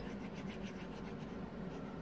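Faint scratchy rubbing of a computer mouse dragged back and forth across the desk in short repeated strokes, over a steady low hum.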